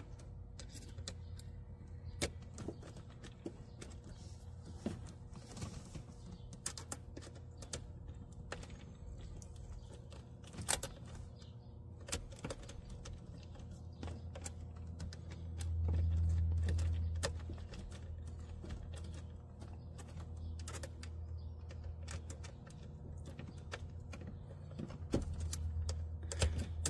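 A small hand screwdriver tightens screws into the plastic pressure-switch housing of a Shurflo 4048 water pump, giving quiet, scattered clicks and taps. Underneath is a steady low hum that swells briefly about two-thirds of the way through.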